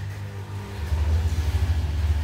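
Low, steady motor-like hum that grows louder about a second in.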